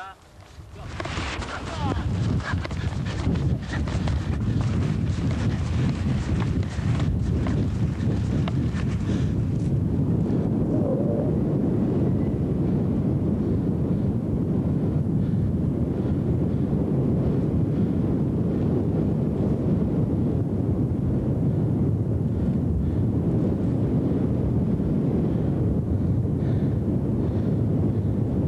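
Wind buffeting the camcorder's microphone: a heavy, steady low rumble that builds over the first couple of seconds, with harsher crackling gusts during roughly the first nine seconds.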